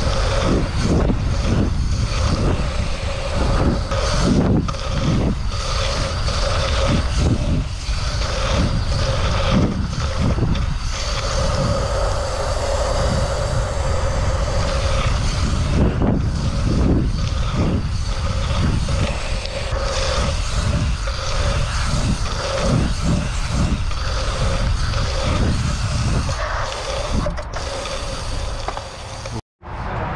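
Wind buffeting an action camera's microphone as a BMX race bike is ridden at speed round a dirt track, with the tyres rolling over the fresh surface and a steady hum running through it. The sound breaks off for a moment near the end.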